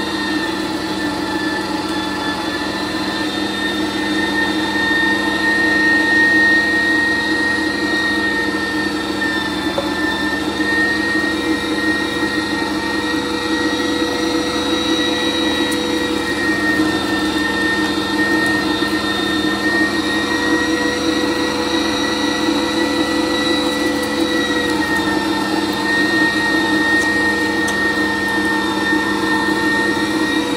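Electric meat grinder running steadily with a motor whine, grinding cubed venison and pork; its pitch wavers slightly now and then as meat is pushed down the throat with the plastic stomper.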